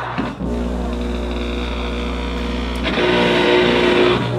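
Loud amplified noise drone from electric guitar gear run through effects pedals, over a steady low amplifier hum. The texture cuts out briefly about a third of a second in and settles into a held, many-toned drone, which swells louder and brighter about three seconds in.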